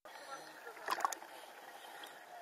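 Sea water sloshing and splashing around a camera held at the surface, with a few sharp splashes about a second in.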